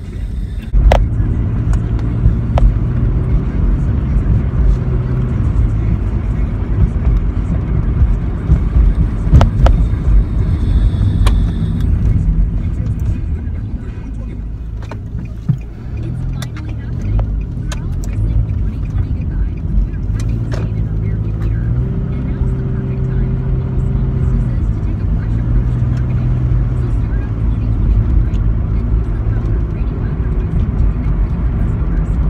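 Car cabin noise while driving: a steady low engine and road rumble whose pitch shifts a few times, with scattered short clicks and knocks.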